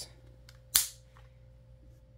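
One sharp plastic click about three quarters of a second in, with a couple of faint ticks around it, as a Beyblade X launcher and its attached Bey Battle Pass are handled.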